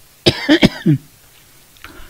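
A man coughing: a short burst of a few rough coughs with a throat-clearing catch, starting about a quarter of a second in and over in under a second.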